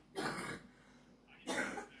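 A person's two short, breathy bursts of stifled laughter, about a second apart.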